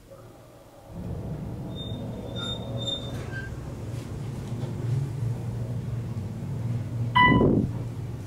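Otis hydraulic elevator car in motion: a steady low hum from the pump unit starts about a second in and runs on, with a few faint high beeps soon after. Near the end a single loud chime rings, the car's floor chime.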